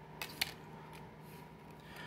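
Faint handling noise: two light clicks about a quarter and half a second in, over a faint steady hum.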